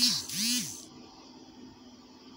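A man's brief breathy exasperated vocal sound, twice rising and falling in pitch, in the first second; then only faint room noise.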